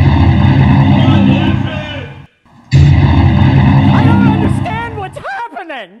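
Two deep, very loud trailer-style blasts, each held and fading over about two seconds, with a short break between them. A man's voice shouts near the end.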